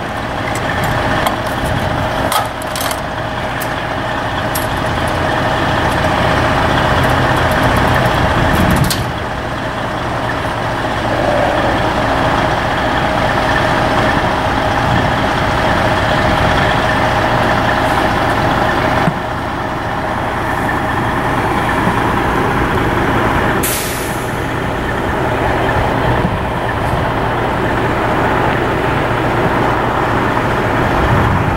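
Semi truck's diesel engine idling steadily. A few sharp clicks and clanks come in the first nine seconds, and a short hiss about 24 seconds in.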